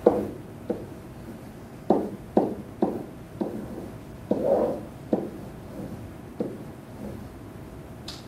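Pen tapping and knocking against an interactive whiteboard (SMART Board) surface while writing: about ten short knocks at uneven intervals.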